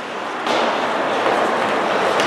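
Ice hockey game in a rink: a sharp knock about half a second in, of the kind a stick striking the puck or the puck hitting the boards makes, then a louder steady wash of skating and crowd noise.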